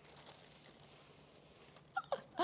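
Faint, soft rustling scrape of a cardboard shadow puppet being pulled along by a string inside a cardboard shadow-puppet box.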